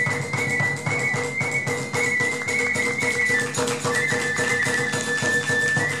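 Iwami kagura festival music: a bamboo transverse flute playing long high held notes over fast, continuous drumming.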